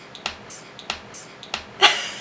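A woman's breathy laughter in short bursts, about three a second, with one louder voiced laugh near the end.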